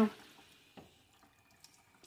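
Faint water from a handheld shampoo-bowl sprayer running onto hair after being turned down to a low flow, with one brief faint noise a little under a second in.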